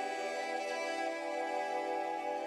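Ambient background music of long, held notes.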